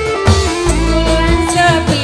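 Live dangdut band music with a woman singing into a microphone, holding one long note over a steady bass line.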